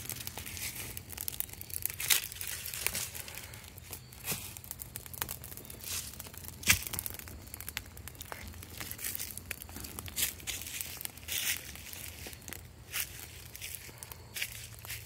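Dry leaves burning in a clay fire pit, crackling with irregular sharp pops and snaps, one louder snap about halfway through.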